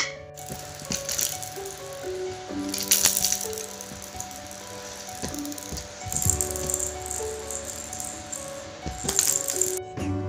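Baby's toy rattle shaken in irregular bursts, over background music with a gentle melody.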